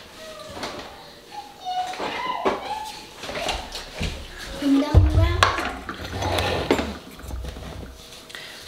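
Kitchen sounds: children's voices and babble, light knocks and clicks, and a heavy thump about five seconds in followed by low rumbling handling noise as a plastic jug of milk is brought to the counter and set down.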